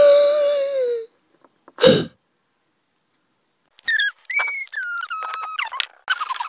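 A child's voice making wordless character noises. It opens with a long, loud held whine that sags at the end, then a short falling groan, then a run of high-pitched squeaky tones in steps.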